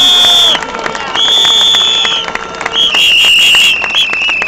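Shrill whistles blown in long blasts of about a second each, the last one warbling, over a crowd clapping and cheering.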